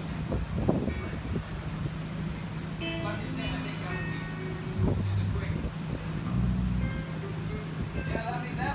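A live band playing electric guitar, bass guitar and drums, with a sustained low bass note under scattered guitar notes and an occasional drum hit.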